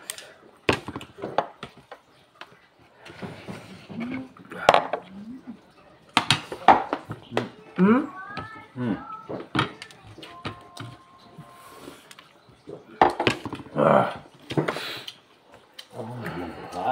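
Meal at a table: scattered clinks and taps of spoons and fingers against china plates and bowls, with short bursts of talk between them.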